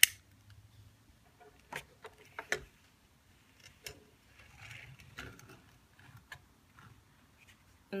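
A sharp click at the start, then a few light knocks and a short scrape as a glass alcohol burner is set down and slid across the tabletop under a wire-gauze stand.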